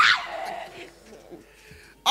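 A woman's loud, dog-like howl, held into the microphone and dying away within about half a second.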